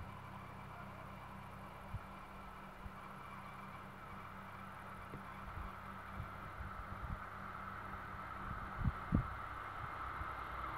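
Faint, slowly growing hum of a distant electric locomotive approaching along the track. Scattered low thumps over it, the loudest two near the end.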